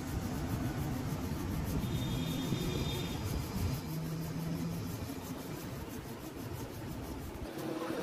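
Steady low rumble of motor vehicles running nearby, with a short steady hum about four seconds in.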